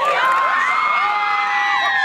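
A group of young people screaming and cheering in celebration, with several long high screams held at once over the crowd noise.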